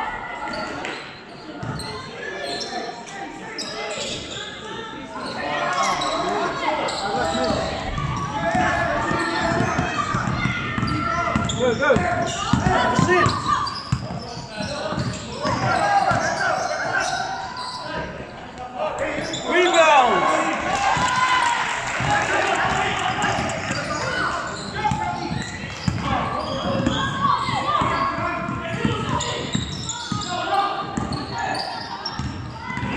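Basketball bouncing on a hardwood gym floor during play, amid players' and spectators' voices echoing in a large sports hall.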